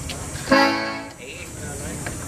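Concertina sounding a single short chord about half a second in, lasting roughly half a second before dying away.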